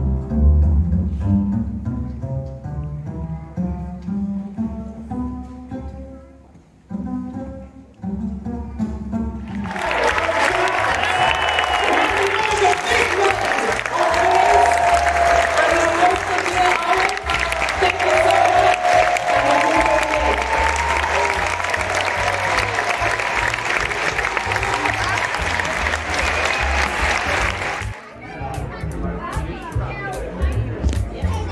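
Solo pizzicato upright double bass playing two short passages, a demonstration of plucking with one finger and with two fingers. About ten seconds in, the audience breaks into long applause and cheering, with low bass notes still heard beneath.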